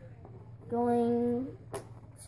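A child's voice holding one steady-pitched 'uhhh' for under a second, then a sharp click near the end as a cardboard toy box flap is pulled open.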